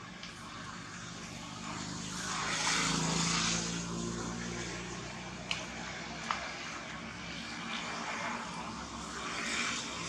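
A motor engine hums in the background, swelling about two to four seconds in and again near the end. Two short sharp clicks come in the middle.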